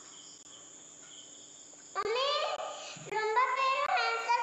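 A young child's voice, starting about two seconds in and running on with drawn-out, sliding pitches, after a quiet opening that holds only a faint high steady tone.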